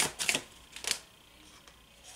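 A deck of tarot cards shuffled by hand: a quick run of crisp card snaps that stops about a second in.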